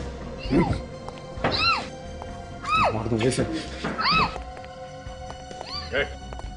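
A woman crying out in short, high-pitched wails, each rising and then falling in pitch, about five of them roughly a second apart, over a tense background music drone.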